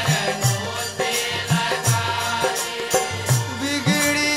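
Instrumental passage of Fiji Hindu kirtan music: held reed-like tones under pairs of low hand-drum strokes that slide in pitch, with sharp percussive clicks.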